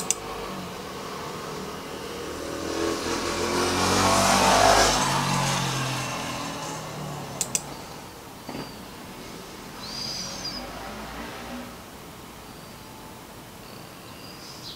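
A vehicle passing by: its noise swells to a peak about four and a half seconds in, then fades away. Two sharp clicks come a little past seven seconds, and a brief high chirp comes around ten seconds in.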